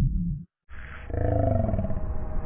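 A loud low rumble cuts off about half a second in. After a moment of silence a heavily slowed-down voice recording begins: deep and drawn out, its pitch holding fairly steady.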